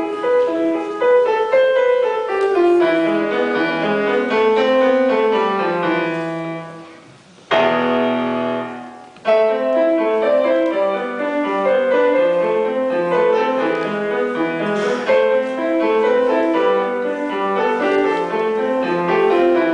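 Solo grand piano played with a steady stream of notes. About halfway through, the playing thins out and a loud chord is struck and left to ring for over a second before the running notes resume.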